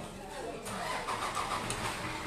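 A motor vehicle engine running, setting in about half a second in and holding steady, with voices over it.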